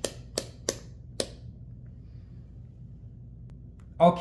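Rotary selector dial of an AstroAI AM33D digital multimeter clicking through its detents as it is turned to the off position: about five sharp clicks over the first second or so, then quiet room tone.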